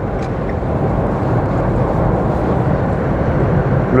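Road and wind noise inside the cabin of a Dacia Spring electric car at high speed, a steady rush that grows slightly louder; at this speed it is annoying.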